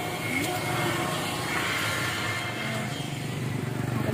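A small motorcycle passing on the road, its engine running steadily.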